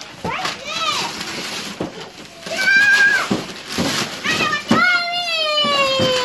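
Young children's voices: a shout of "No!" at the start, a high held squeal about halfway through, and a long, slowly falling cry near the end.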